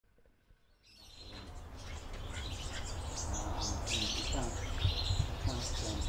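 Wild birds chirping and calling, fading in about a second in, over a low steady rumble.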